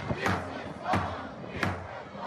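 Protest crowd chanting a slogan in unison, three shouted beats about two-thirds of a second apart over the general crowd noise.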